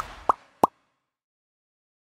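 Three quick upward-gliding 'bloop' pop sound effects from an animated logo outro, all within the first second.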